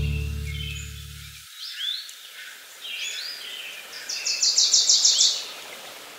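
The song's last chord fades out over the first second and a half, leaving birds chirping in short rising and falling calls, with a quick trill of about eight notes about four seconds in.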